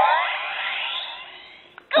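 Yo-kai Watch toy's small speaker playing its summoning sound effect after a Yo-kai medal is inserted: sweeping, gliding tones that fade out over about a second and a half.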